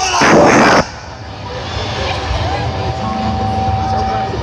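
Large festival crowd cheering between songs, opening with a short, very loud burst of noise that cuts off abruptly in under a second. A few voices or whistles stand out over the steady crowd noise near the end.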